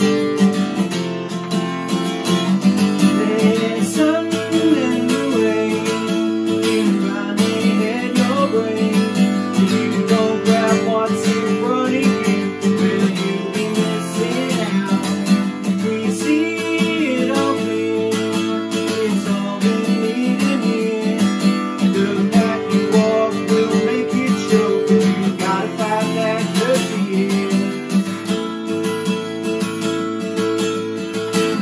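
Acoustic guitar strummed in a steady rhythm, playing an instrumental passage of a song between sung verses.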